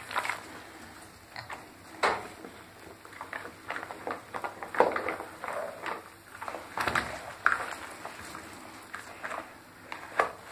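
Plastic bath toys knocking together and bath water sloshing as a child plays in a bubble bath: a string of irregular knocks and small splashes.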